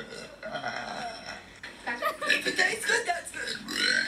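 A girl burping, growing louder about halfway through.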